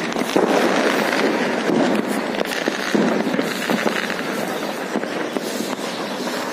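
Fireworks and firecrackers going off: a dense, continuous crackle of many small pops and bangs.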